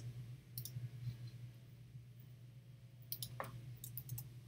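A few faint computer mouse clicks, a pair about half a second in and a cluster near the end, over a steady low hum.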